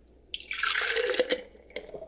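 Thick blended kale shake pouring from a blender jar into a glass mason jar. The pour starts about a third of a second in and runs for about a second, then ends in a few short drips and splashes near the end.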